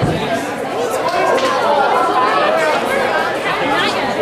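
Loud, overlapping chatter of many people talking at once, with no single voice standing out.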